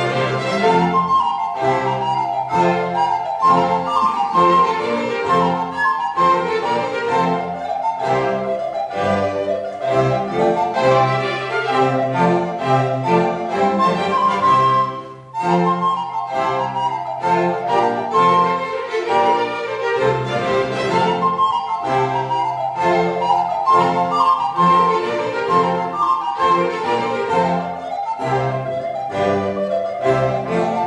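Two recorders playing the solo lines of a baroque sonata in F major over a string orchestra with violins and cello. The music breaks off very briefly about halfway through, then carries on.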